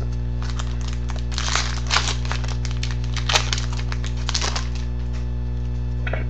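Trading cards being flipped through and shuffled by hand, a run of short clicks and rustles, thickest in the middle, over a steady low electrical hum.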